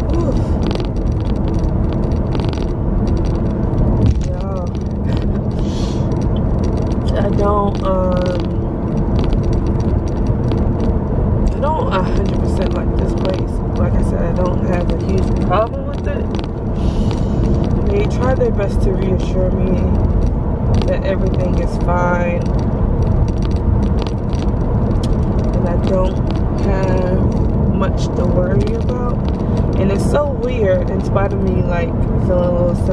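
Steady rumble of a car's road and engine noise heard inside the cabin, with short bursts of a woman's voice now and then.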